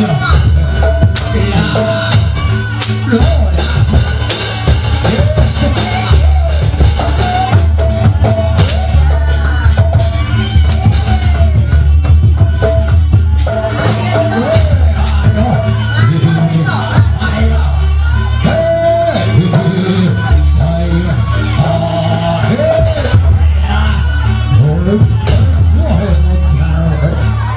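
Javanese jaranan ensemble music, loud and continuous: drums and percussion beat under a bending, held melody line.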